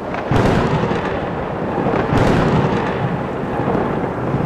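Thunder rumbling over a steady storm wash, with two louder thunderclaps, one about a third of a second in and one about two seconds in.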